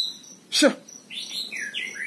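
A young white-rumped shama (murai batu) calling: one loud, sharp call about half a second in, then several short, high chirping notes in the second half.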